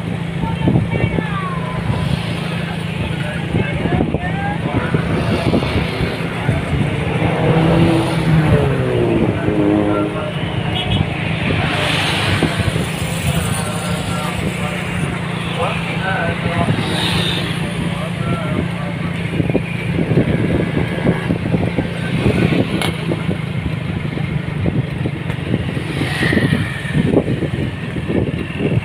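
Street traffic heard from a moving vehicle: a steady engine drone with motorcycles and cars passing, and a few indistinct voices.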